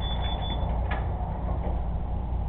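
Steady low hum on a surveillance camera's audio, with three short high beeps in the first half second or so and a faint click about a second in.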